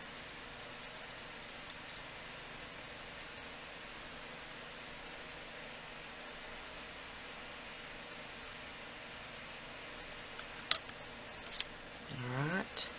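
Mostly a low steady hiss with a few faint ticks as a long metal clay blade is pressed down through polymer clay on a ceramic tile. Near the end comes a sharp click and then a brief scrape as the blade comes off the tile and is set down.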